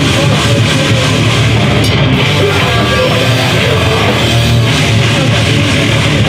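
A hardcore band playing live: distorted electric guitar and bass over a full drum kit, loud and dense without a break.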